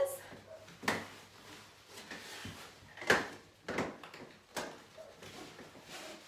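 Door swing's nylon straps and buckles clicking and knocking against a closed door as the strap lift is released and the rider shifts in the seat: four sharp knocks, the loudest about three seconds in.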